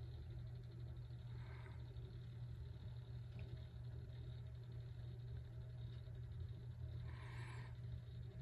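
Quiet room tone with a steady low hum, and two faint brief sounds, one about a second and a half in and one near the end.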